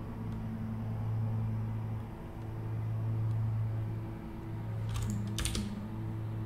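A few quick computer keyboard keystrokes about five seconds in, over a steady low hum.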